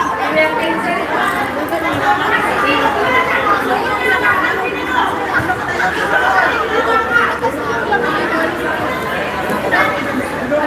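Several people chattering at once: overlapping, indistinct conversation among players in a large sports hall, with no single voice standing out.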